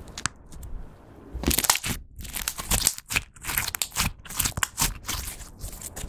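Clear slime being folded, pressed and kneaded by hand, giving a run of wet crackling and squishing sounds. It is sparse at first and grows busier and louder from about a second and a half in.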